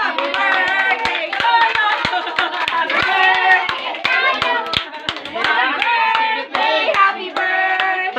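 Several people clapping hands in a steady beat, about two claps a second, while voices sing along.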